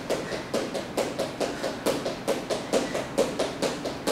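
Sneakers thudding lightly on a wooden floor in a quick, even rhythm, several steps a second, as a person bounces on the balls of the feet while throwing fast punches.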